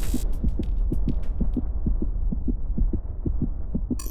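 Racing heartbeat sound effect: a quick, even run of low thuds, several a second, over a low hum. It marks a heart rate risen to over 100 beats a minute.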